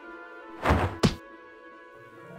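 Cartoon sound effect of a thrown coin hitting the ground: a dull thud followed at once by a sharp click, a little over half a second in, over soft background music.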